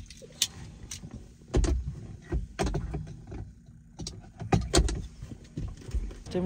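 Irregular clicks, knocks and a few heavier thumps inside a parked car's cabin as someone shifts in the seat and handles things, with rustling between them.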